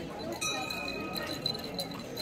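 A bell struck once about half a second in, its clear metallic ring fading away over about a second and a half, over the chatter of a crowd.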